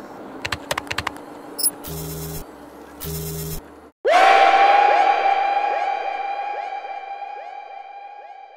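Computer keyboard keys clicking, then two short electronic blips. About four seconds in, a Splice sample preview of a "toe stub impact" sound effect starts suddenly and loudly, a ringing, steady tone that slowly fades.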